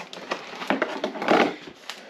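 Rustling and crinkling of plastic and foil mylar food-storage bags being handled, with a bag of dry pasta among them. It comes in a few short bursts, the loudest about a second and a half in.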